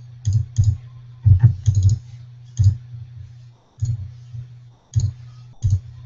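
Computer mouse and keyboard clicks: about eight single sharp clicks at uneven intervals, some in quick pairs, over a steady low hum.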